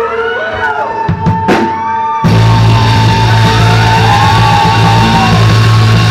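Live rock band: a singer holds one long high note over a few scattered drum hits, and about two seconds in the full band comes in at once, much louder, with heavy bass and drums under the held note.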